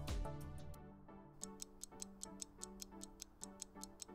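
Countdown-timer ticking sound effect, about four quick ticks a second, over a faint, soft background music bed.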